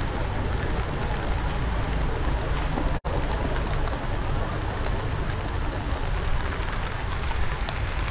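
Steady rain over a flooded street, with a low rumble underneath. The sound drops out for an instant about three seconds in.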